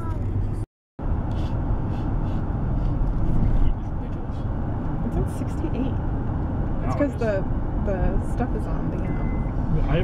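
Steady road and engine rumble inside a moving car's cabin. It drops out completely for a moment about a second in. Faint voices come in around seven seconds.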